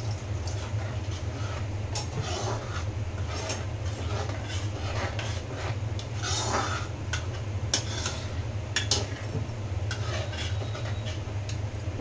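A steel ladle stirring thin gravy in a metal kadai, scraping along the pan and clinking against its side several times. A steady low hum runs underneath.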